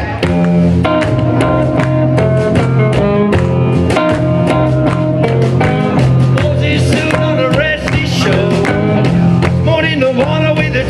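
Live blues band playing an instrumental passage: electric guitar, upright double bass and a drum kit keeping a steady beat.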